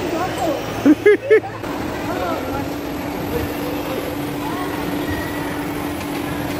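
Three short, loud shrieks about a second in, from people on a swinging pendulum amusement ride, over steady background noise. A steady hum starts just after them and carries on.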